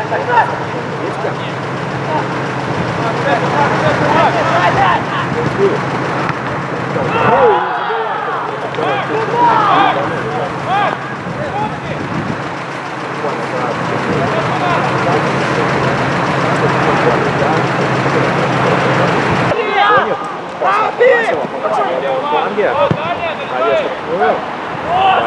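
Live football match sound: players and spectators shouting and calling out, with a steady low hum underneath that cuts off suddenly about three-quarters of the way through.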